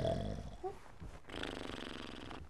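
A sleeping man snoring, one long drawn-out snore starting about midway.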